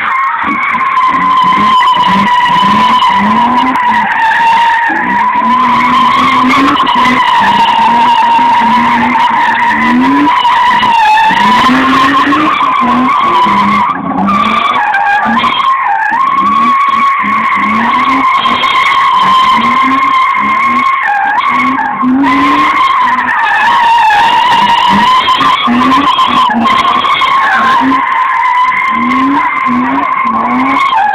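BMW 325 sedan doing donuts: its rear tyres squeal continuously in a steady high whine, and the engine revs rise and fall over and over as the throttle is worked.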